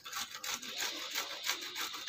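Cauliflower floret being grated on a flat stainless-steel grater: a quick run of rasping scrapes as it is rubbed back and forth over the metal teeth.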